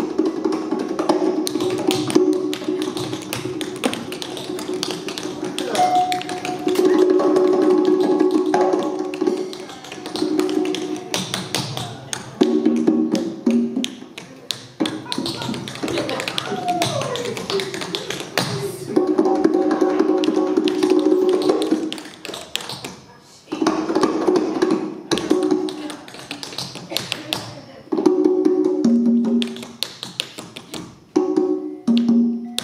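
Tap dancing: quick, sharp shoe taps on a wooden stage floor over live band music, with a held melody line that breaks off and returns and glides downward about halfway through.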